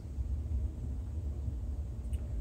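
Steady low rumble of room noise with a faint hiss and no distinct events; the slow pour of resin into the cup makes no clear sound of its own.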